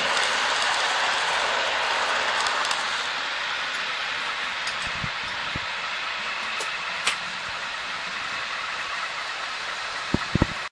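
Model InterCity 125 train running past on the layout's track, a steady hissing rumble that is loudest in the first few seconds and then eases as the train moves away. A couple of brief clicks come about five and seven seconds in.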